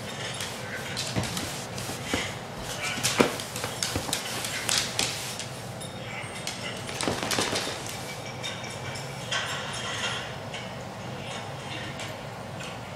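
A small dog scrambling about on a couch and a hardwood floor: scattered clicks, scuffs and knocks, the loudest a little after three seconds in, over television voices.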